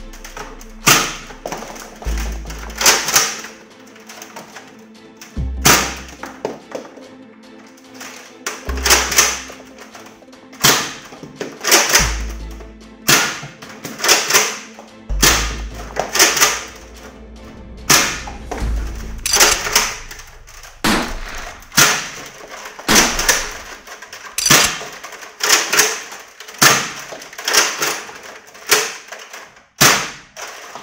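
A spring-powered Nerf Modulus LongStrike CS-6 dart blaster being primed and fired again and again, sharp clacks and thunks about once a second, over background music.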